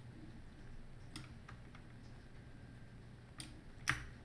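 A few faint, scattered clicks from a computer mouse and keyboard, about four in all, the last two coming close together near the end.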